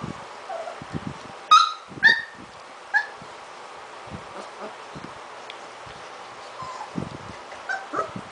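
Young puppies, three and a half weeks old, playing: three short high-pitched yips about a second and a half in, then two more within the next second and a half, and a couple of fainter squeaks near the end, over light knocks and scuffles.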